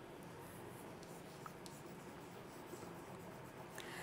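Chalk writing on a blackboard: faint scratching with a few light taps.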